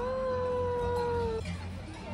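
A cow mooing: one long, fairly high call that rises at the start, holds steady and stops about a second and a half in.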